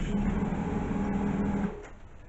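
Chester 920 lathe's VFD-driven three-phase motor running in reverse with a steady hum, stopping sharply near the end.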